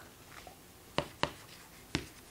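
Writing on a hard surface: a few short, sharp taps of the writing tool in a small room, three of them in the second half.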